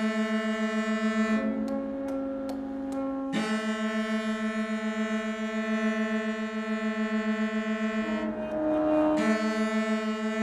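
Contemporary chamber music for cello, accordion and saxophone trio, playing long held notes. A bright, reedy held tone pulses rapidly and steadily, and twice gives way for about a second to a different, thinner held note before returning.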